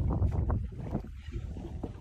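Wind rumbling on the microphone over open water, strongest in the first second and then easing, with light water splashes and small knocks against the boat.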